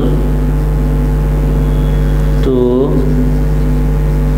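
A loud, steady hum made of several fixed low tones, with no change in level. A man says one word about two and a half seconds in.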